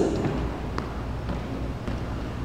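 Sneakers stepping on a plastic aerobics step and wooden floor during side lunges: a couple of faint taps over a steady low hum in the room.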